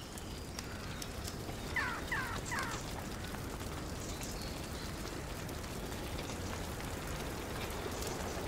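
Steady outdoor background hiss, with a bird giving three short falling calls about two seconds in.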